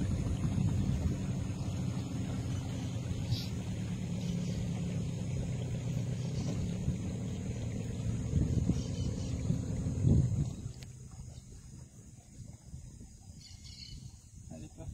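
Motorboat engine running steadily with a low drone; about ten and a half seconds in it drops away, leaving only faint background sound.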